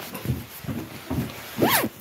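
Clothing and hands rustling against a covered phone microphone, with a few dull thumps. Near the end a short squeak rises and falls in pitch.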